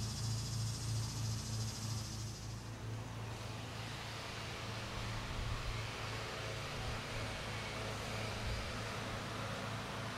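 Distant lawn mowers running: a steady low engine drone with a slight pulse.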